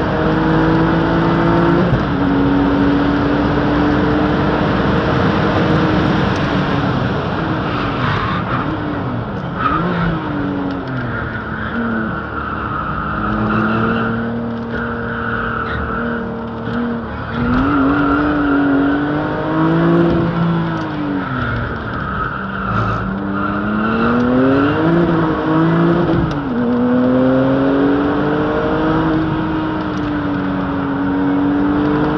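Tuned, turbocharged Porsche engine heard from inside the cabin at track speed, its pitch climbing under hard acceleration and dropping away under braking several times, with quick rev blips on the downshifts. Tyres squeal steadily through a long corner in the middle.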